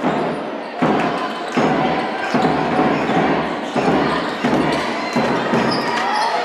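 Basketball being dribbled on a hardwood court in a large hall, a steady rhythm of about seven bounces, one every 0.7 seconds or so, each ringing on briefly in the hall.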